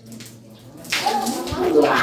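Loose soil being tipped out of a plastic jar, a rushing sound starting about a second in, with an indistinct voice over it.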